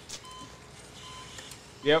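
Operating-room cardiac monitor beeping once per heartbeat. The short, mid-pitched beeps come evenly about three-quarters of a second apart, a steady rate near the patient's 86 beats a minute.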